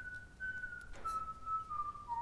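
A single thin, pure whistle-like tone, held and stepping slowly down in pitch in three or four steps, as if a slow melody is being whistled.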